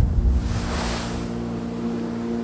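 A sea wave crashing: a low boom at the start, then a hissing wash of surf that swells and fades, over a sustained music chord.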